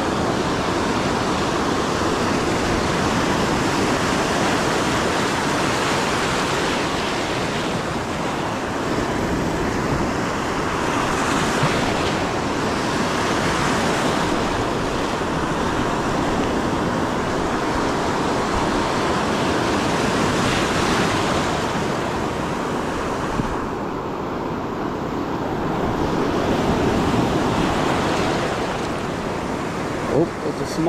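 Ocean surf breaking and washing over the shallows, a steady rushing wash that swells and eases as the waves come in.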